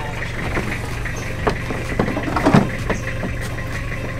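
Pickup truck engine idling with a steady low hum while people climb into its metal load bed, with scattered knocks and footfalls on the bed.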